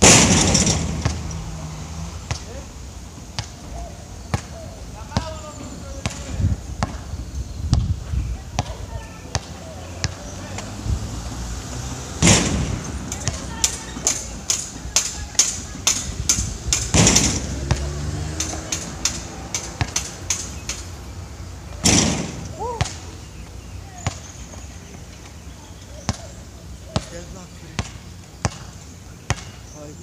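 A basketball bouncing on an outdoor hard court, with a run of quick dribbles in the middle. Four louder hits, right at the start and about 12, 17 and 22 seconds in, are the ball striking the backboard and rim, each ringing on briefly.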